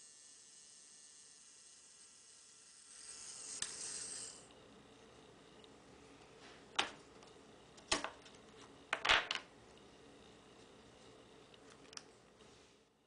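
Small DC hobby motor with a little wheel on its shaft whirring briefly, about three seconds in, then several sharp clicks from handling the motor and its alligator-clip leads, two of them close together.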